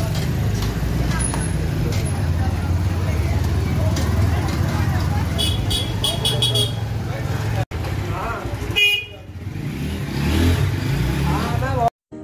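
Busy lane street noise: a vehicle horn tooting several short times in quick succession about halfway through, over a steady low rumble and voices.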